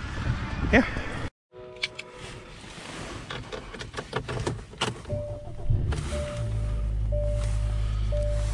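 Inside a 2016 Hyundai Sonata with rain on the glass: scattered clicks and knocks, then a repeating electronic warning chime. About three-quarters of the way in, the engine starts and settles into a steady idle hum.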